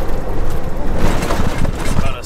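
Semi truck cab noise with the diesel engine and tyres running. About a second in, a spell of rattling and clunking, as the truck rolls over a railway crossing.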